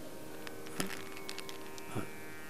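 Faint steady hum, with two light clicks from a plastic tablet bottle handled near the microphones, about a second in and near the end.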